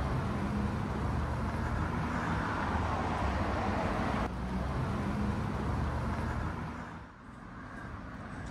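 Street traffic: car engines humming and tyres on the road, with a louder passing swell about three seconds in. The sound drops away near the end.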